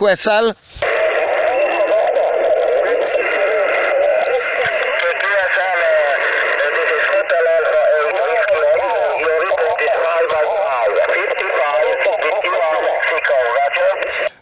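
A distant amateur radio operator's voice heard through a portable HF transceiver's speaker on the 40-metre band. The speech is narrow and tinny over a steady hiss, starts a moment in, and replies with a signal report and greetings.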